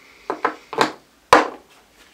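Small objects being handled and set down on a hard surface: four sharp knocks within about a second, the last the loudest.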